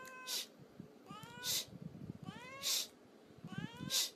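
A black-and-white domestic cat meowing four times, about once every 1.2 seconds, each meow a short rising call that ends in a brief breathy rush.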